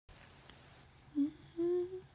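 A woman humming two short notes with her mouth closed, a brief lower note followed by a longer, higher one that rises slightly.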